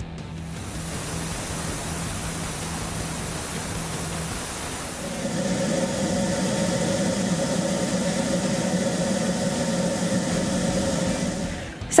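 Airflow test bench drawing air through a car's cold air intake at its maximum rated 462 CFM: a steady rushing of air that builds up over the first second and changes in tone about halfway through.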